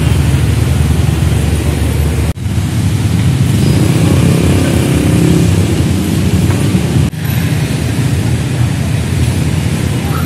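Steady outdoor road-traffic noise, the low engine sound of passing vehicles. It breaks off abruptly twice, at shot cuts, once a couple of seconds in and again about seven seconds in.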